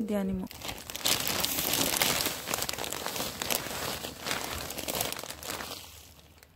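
Plastic compost bag crinkling and rustling as it is handled and emptied, with compost spilling out onto the soil. The crinkling is dense and crackly, starts about a second in and fades near the end.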